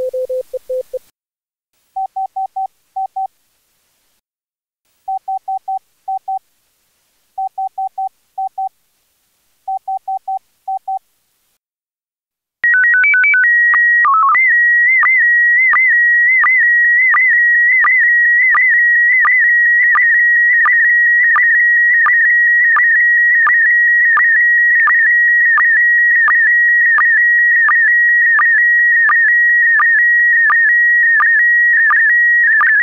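Morse code beeps: a short keyed run, then four brief groups of higher-pitched beeps with gaps between. About halfway through, an SSTV picture transmission in PD90 mode starts: a short header of stepped tones, then a steady high whistle broken by regular short low blips about every 0.7 s, the line sync pulses.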